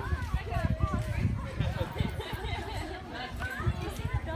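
Several people talking at once in the background, overlapping chatter with no single clear voice, over a low outdoor rumble.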